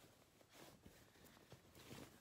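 Near silence with faint rustling of muslin fabric being handled and turned, and a few soft ticks.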